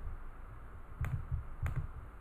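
Soft computer mouse clicks, two clear ones about a second and a second and a half in, with faint low bumps of handling around them.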